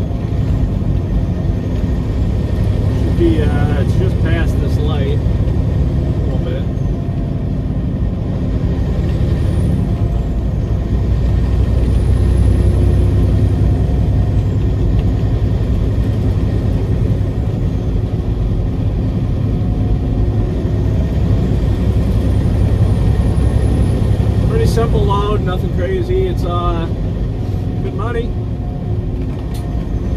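Peterbilt 389 semi truck's diesel engine running steadily at road speed, a constant low drone with road noise, heard from inside the cab.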